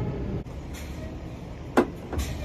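Steady low rumble of a parked Freightliner semi truck idling, with one sharp click near the end.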